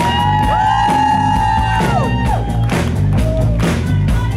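Live pop-rock band playing: drums and bass keep a steady beat under long held high notes that slide up into each note and fall away at its end.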